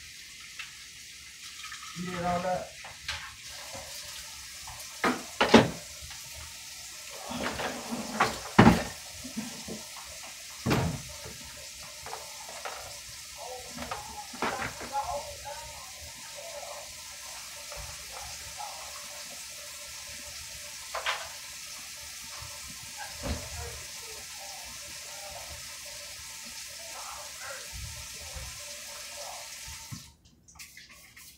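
Kitchen faucet running steadily into a stainless steel sink while dishes are washed by hand, with several sharp clinks and knocks of dishes against the sink, the loudest between about five and eleven seconds in.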